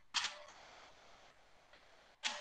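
A sharp click, then a soft hiss that fades away over about a second.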